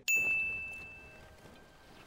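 Sin-counter 'ding' sound effect: a single bell-like ding struck once, its high tone ringing for about a second and fading away.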